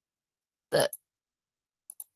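A single short word, "the", spoken by a woman, with silence on either side of it.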